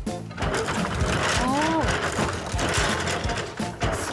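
Hand-lever-driven wooden kumihimo braiding machine running: a fast, dense clatter of its gears and wooden parts that starts about half a second in and keeps up steadily.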